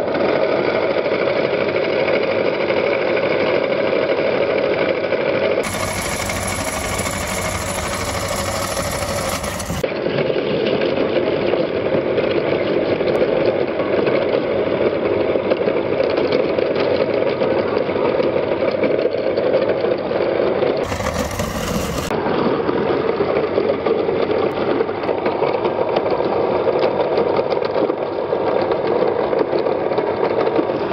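Motor-driven meat grinder running steadily while it grinds whole fish, flesh and bone pressed out through the grinder plate. The machine sound changes character twice, from about six to ten seconds in and briefly around twenty-one seconds.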